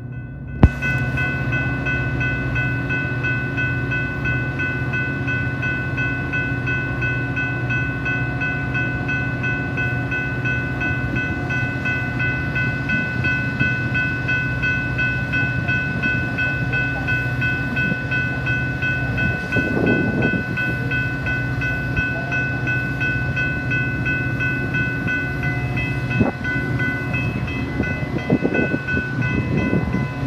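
Grade-crossing warning bell ringing with a steady, even beat over the low steady hum of a Metra diesel locomotive's engine running.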